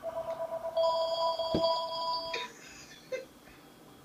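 Home telephone ringing with an electronic ring for about two and a half seconds, then stopping.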